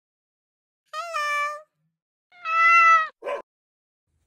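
A cat meowing twice: two drawn-out calls about a second apart, the second louder, followed by a short rough sound.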